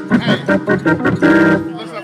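Two-manual organ played in gospel style: a run of short, rhythmic chord stabs, then a held chord that cuts off abruptly near the end.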